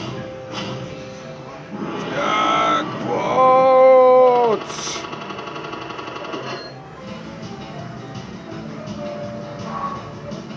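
Fruit machine's electronic sounds as the reels come to a stop: a short jingle of held tones, loudest about three to four and a half seconds in, followed by a quick run of evenly spaced beeps, over arcade background music.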